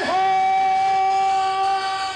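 Happy hardcore rave music in a breakdown: a single synth note swoops up into pitch and is held steady, with no beat under it.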